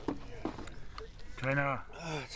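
A man's voice: one short, drawn-out vocal sound about one and a half seconds in, after a couple of faint knocks.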